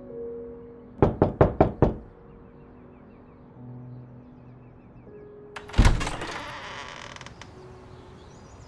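Five quick knocks on a door about a second in, then a single louder bang with a fading rattle about six seconds in.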